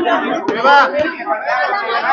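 Speech only: several people talking at once, voices overlapping.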